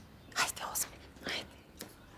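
Quiet whispering: a few short, hissing syllables about half a second apart.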